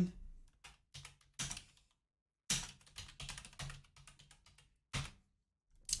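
Typing on a computer keyboard: a run of irregular keystrokes with a short pause about two seconds in.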